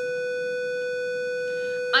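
A steady electronic tone at a single pitch with overtones, held without a break at an even level.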